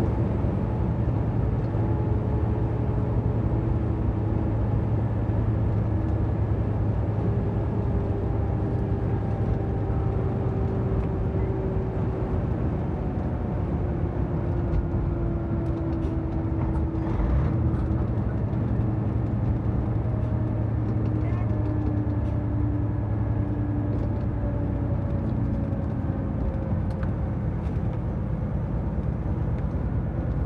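Semi-truck engine and road noise heard from inside the cab at highway speed: a steady low drone, with faint tones that slowly fall in pitch.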